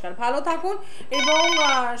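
A telephone ringing: a short steady electronic ring lasting under a second, starting about a second in, over a man's voice speaking into a studio microphone.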